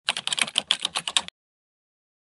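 Keyboard typing sound effect for text typing itself out on screen: a quick run of about a dozen key clicks, around ten a second, stopping suddenly just over a second in.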